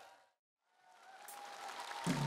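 Concert crowd applause fading out into a moment of complete silence, then fading back in and growing louder.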